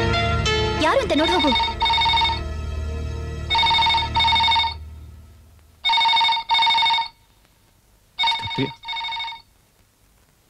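Electronic ringer of a Crompton Greaves push-button desk telephone ringing in pairs of short rings, a pair about every two seconds, signalling an incoming call. Background music runs under the first rings and fades out about halfway through.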